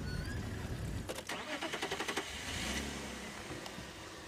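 Safari game-drive vehicle's engine starting up, with a quick run of clicks about a second in, then running as the vehicle sets off.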